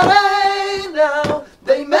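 Male flamenco singer singing unaccompanied: a long, wavering held note, then a shorter phrase, breaking off briefly about a second and a half in before starting the next line. Two sharp claps mark the beat, about a second and a quarter apart.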